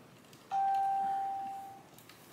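A single clear chime-like tone, one steady pitch that starts sharply about half a second in and fades away over about a second and a half.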